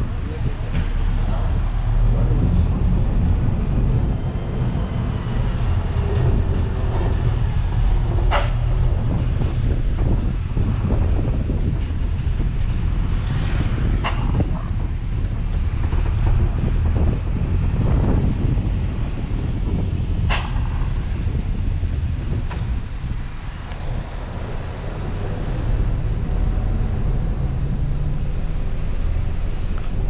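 Ride noise inside a moving road vehicle: a steady low engine and road rumble, with three sharp knocks or rattles spread through it.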